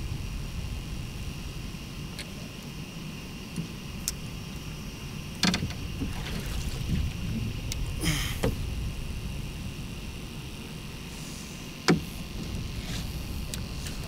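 A flathead catfish being landed in a net from a boat, with water splashing as the net comes up out of the river about eight seconds in. Sharp knocks of gear against the boat come before and after, over a low steady rumble.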